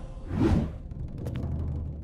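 A dubbed whoosh sound effect for a swinging blow, swelling and fading about half a second in, over a low droning music score.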